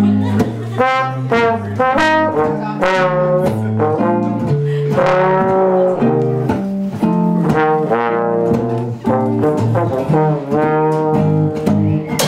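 Jazz trombone playing a lyrical melody line of connected notes, accompanied by guitar chords.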